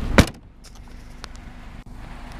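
Rear hatch of a 2002 Honda Civic Si hatchback slammed shut: one loud thud near the start, with a steady low hum stopping at the same moment. Faint clicks and handling noise follow.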